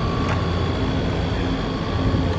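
Steady low rumble of city street traffic, with no single event standing out.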